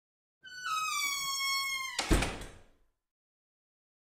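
A door hinge creaking in one long squeal that slowly falls in pitch, then the door shutting with a thud about two seconds in that rings briefly and dies away.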